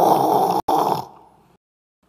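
A man's loud, breathy, rasping vocal sound imitating a fire flaring up. It breaks off briefly about half a second in, then fades away within the next second.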